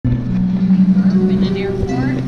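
Harp playing, its low notes ringing on and shifting to new pitches, with people talking nearby.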